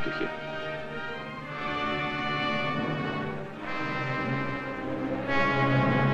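Orchestral soundtrack music: held brass chords that change every second and a half to two seconds, swelling a little near the end.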